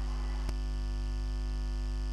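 Steady electrical mains hum with a buzzy edge on the audio line, with two small clicks in the first half second.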